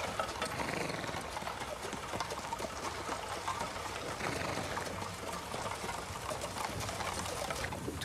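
Horse-drawn carriage on the move: a dense, steady rattling and clatter of wheels and fittings, with two brief rising-and-falling squeaks, about half a second in and about four seconds in.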